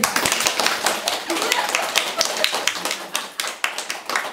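A small group of people clapping their hands together: many fast, uneven claps overlapping throughout.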